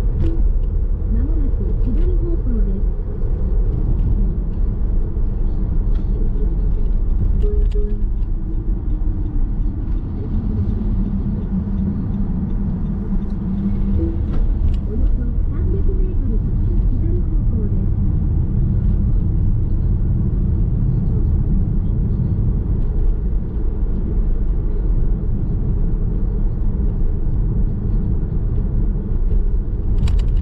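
Car driving along a city street, heard from inside the cabin: a steady low rumble of tyres on asphalt and engine, muffled, with little high-pitched sound.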